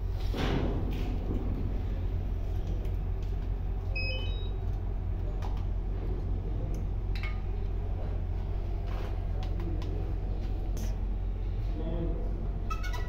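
Steady low rumble of a ship's machinery, with a short run of electronic beeps about four seconds in as the folding drone powers up, and a few light handling clicks.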